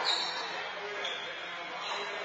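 Handball rally: a rubber handball smacking the wall and floor and sneakers squeaking on the court floor, with players' voices under it.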